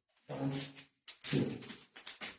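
Two short, forceful voiced shouts or exhalations from a man, each about half a second long and about a second apart, breathy, made as he strikes with a pair of fighting sticks.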